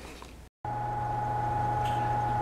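An edit about half a second in: a brief dropout, then a steady electrical or machine hum with a faint higher whine over it.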